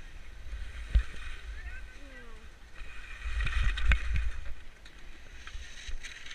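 Skis sliding and scraping over snow, with wind rumbling on the camera's microphone. It swells to its loudest from about three to four and a half seconds in, with a sharp knock about a second in and another near four seconds.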